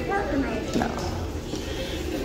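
A few light clacks of plastic clothes hangers on a metal rack rail as garments are pushed along, under faint murmured speech and a steady low store hum.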